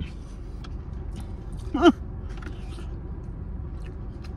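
Steady low rumble of a car's idling engine heard inside the cabin, with faint chewing and mouth clicks. A short "uh" comes about two seconds in.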